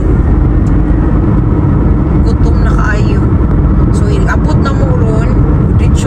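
Steady low rumble of road and engine noise inside a moving car's cabin, with quiet voices under it in the middle.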